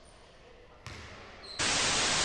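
Faint room tone, then, about a second and a half in, a loud steady hiss of TV static as a transition sound effect.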